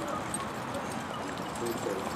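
Hoofbeats of a pair of carriage-driving horses moving on grass, with the carriage and harness rattling along behind them.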